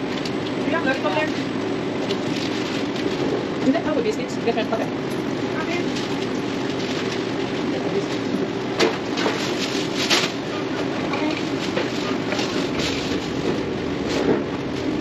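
Fast-food restaurant kitchen ambience: a steady hum of kitchen equipment and ventilation, with occasional clatter and knocks and indistinct voices of staff behind the counter.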